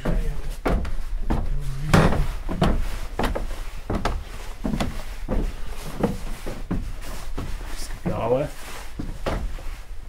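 Machinery of a working electric grain mill running, knocking over and over at about two to three knocks a second above a low steady hum.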